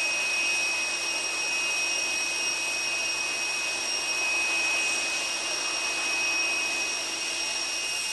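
Airliner's jet turbine running on the tarmac: a steady high-pitched whine over an even rushing noise.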